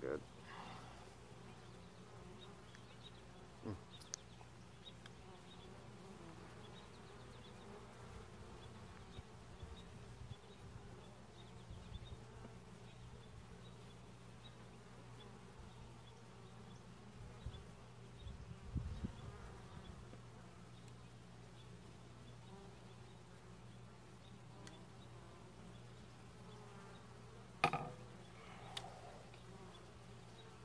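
Honeybees buzzing as a faint, steady hum around a hive being inspected, with a few faint knocks of the wooden hive parts, about four seconds in and again near the end.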